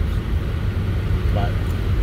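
Steady low road and engine rumble heard inside the cabin of a car driving along a road.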